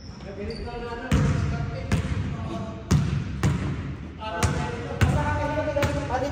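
Basketball dribbled on a hardwood gym floor: sharp bounces starting about a second in and coming irregularly about once a second, each echoing in the large hall.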